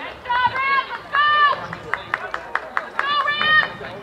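Loud, high-pitched shouted calls from people on the sideline of a soccer game: several drawn-out shouts, with a quick run of sharp claps between them.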